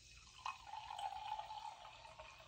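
Freshly carbonated sparkling water poured from a SodaStream bottle into a glass. The pour starts about half a second in and runs steadily, with a fizzing hiss.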